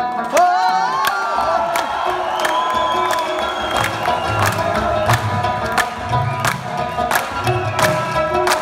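Live Afghan rubab with tabla: sustained ringing string tones over sharp drum strokes at a steady pace of about two a second, with deep bass-drum thuds. Near the start, audience whoops and cheers rise over the music.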